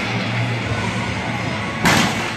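Gym hall noise, then one sharp bang near the end as a vaulter strikes the springboard on the run-up to the vault table.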